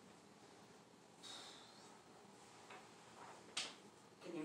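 Near silence: quiet room tone, with a short soft rustle or hiss about a second in and one sharp click near the end.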